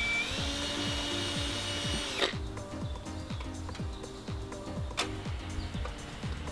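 Cordless drill drilling out a rivet in the Airstream's roof: a steady motor whine that picks up slightly near the start and stops about two seconds in. Background music plays throughout.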